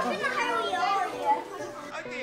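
A crowd of schoolchildren chattering, many young voices talking over one another at once.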